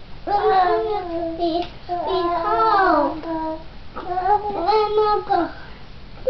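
A two-year-old boy's high voice in three drawn-out, sing-song phrases, chanting the words of a memorised Bible verse.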